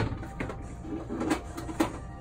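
Handling noises at a counter: a few light, scattered clicks and knocks as items are picked up and moved.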